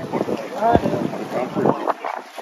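Wind buffeting the microphone, with voices talking in the background.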